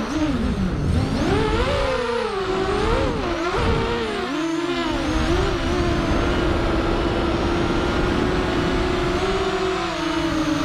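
SRD250 V3 Storm racing quadcopter's electric motors and propellers whining, the pitch swooping up and down with the throttle through the first half, then holding steady for a few seconds with a brief step up near the end.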